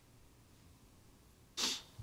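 Quiet room tone, then a short, sharp intake of breath at the microphone about a second and a half in.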